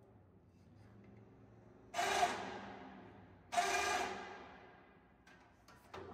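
Two ringing metallic clangs about a second and a half apart, each dying away over a second or so, over a faint low hum.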